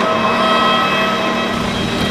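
Steady drone of machinery on an airport apron: a constant rumble with several high, unchanging whining tones laid over it, as from running jet aircraft and idling ground vehicles.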